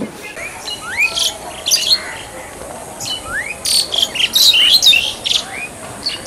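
Several birds calling with short, high chirps, and two rising whistled calls, one about a second in and another just past three seconds.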